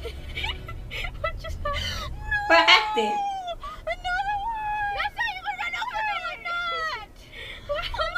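Young women's high-pitched voices laughing and squealing without clear words, with some long held, wavering cries, over a low car rumble that fades out about two and a half seconds in.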